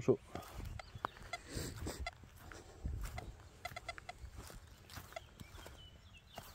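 Faint footsteps on grass and rustling handling noise as a metal detector is carried across a field, with a few faint short high chirps around the middle.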